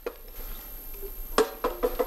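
Ice cubes going into a glass beaker: a sharp knock about one and a half seconds in, then a quick run of smaller clinks and knocks.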